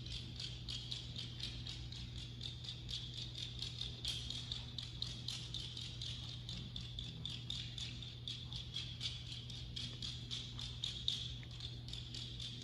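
Live pangalay accompaniment from a small gong-and-drum ensemble, heard faintly: a quick, even, jingling beat of about five strokes a second over a steady low hum and a few held low tones.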